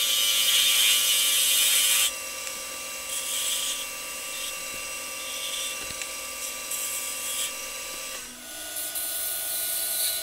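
Wood lathe motor running with a steady whine while a spindle gouge cuts the spinning wood spindle. The cutting noise is loudest for the first two seconds, then comes in shorter bursts. The sound is played back sped up, and the whine steps up in pitch a little after eight seconds.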